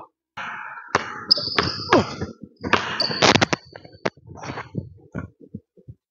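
Basketball being dribbled on a hardwood gym floor, a string of sharp bounces, with high sneaker squeaks about a second in and again about three seconds in as the player cuts toward the basket.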